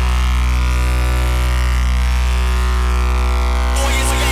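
Electronic dance music in a breakdown: a held synth chord over a deep, steady bass note, with no beat. A hiss-like rise comes in near the end.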